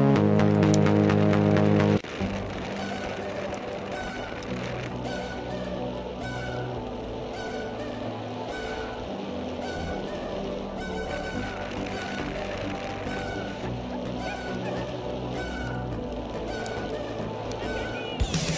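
Music for about two seconds, then it cuts off to live sound from the sled: a steady rush of noise with spectators' horn giving short, repeated honks, roughly one or two a second.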